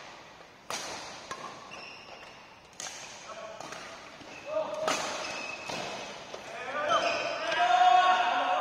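Badminton rackets striking a shuttlecock in a rally: three sharp hits about two seconds apart. Players' voices call out over the last few seconds as the rally ends.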